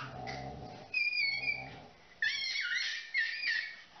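A baby's high-pitched squeals: one short squeal about a second in, then a run of squeals rising and falling in pitch from about two seconds in until near the end.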